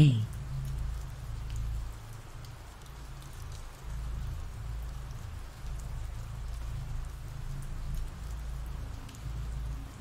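Steady ambient rain: an even hiss of falling rain with a low rumble underneath.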